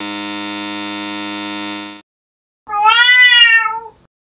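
A steady electronic buzzing tone holds for about two seconds and cuts off suddenly. After a short gap a domestic cat gives one loud meow that rises and then falls in pitch.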